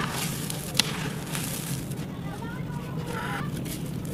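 Hands scooping and crumbling dry dirt, a gritty crackle of small grains and clods breaking, with a sharp click a little under a second in. Faint wavering calls sound in the background in the second half.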